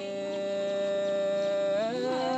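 One long held musical note at a steady pitch, sliding smoothly up to a higher note just before the end.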